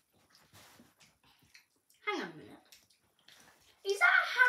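A child chewing and tasting food, with faint wet mouth clicks, and about two seconds in a short vocal sound that slides down in pitch.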